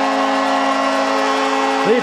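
Arena goal horn sounding one steady, unbroken chord after a goal is scored.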